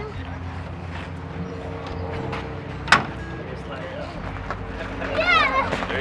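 A single sharp clack about three seconds in, as a number plate is hung in its slot on a hand-operated scoreboard, over a steady low hum. Voices rise up near the end.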